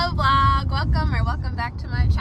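A woman's voice over the steady low road rumble of a moving car, heard from inside the cabin.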